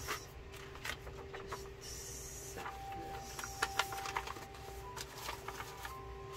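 Scattered light clicks and rustles of objects being handled on a tabletop, with a cluster of sharper clicks a little past halfway. Soft held notes sound underneath and change pitch twice.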